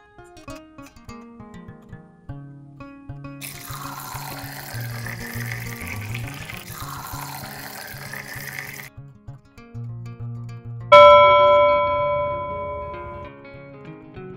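A thin stream of milky rice drink pouring into a glass tumbler, a steady splashing hiss lasting about five seconds, over background music with a steady beat. About three-quarters of the way through, a loud bell-like chime rings out and fades over about two seconds.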